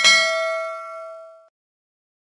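Notification-bell 'ding' sound effect from an animated subscribe button: struck once, ringing out and fading over about a second and a half.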